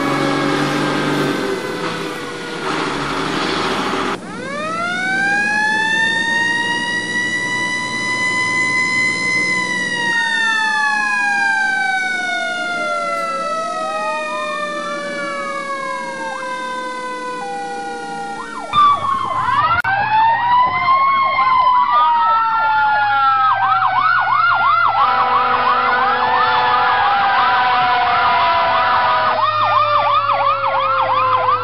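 Fire engine sirens across several spliced clips. About four seconds in, a siren winds up in pitch and then falls slowly. Near the middle, a second tone steps up and down. Just before twenty seconds, another siren rises and gives way to a fast warbling yelp.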